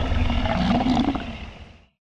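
Closing sound effect of a cartoon: a low rumbling, roar-like sound that fades out over the last second and stops dead.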